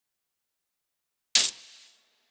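One sharp bang about a second and a half in, with a short tail fading within about half a second: a combustion pop from the glass-headed Briggs & Stratton see-through engine.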